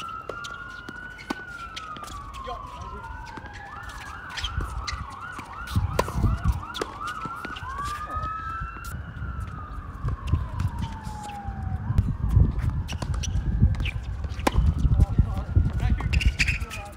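Emergency vehicle siren wailing in slow rises and falls. About five seconds in it switches to a fast yelp for a couple of seconds, then goes back to a wail and fades near the end. Sharp pops of tennis balls struck by racquets come through it.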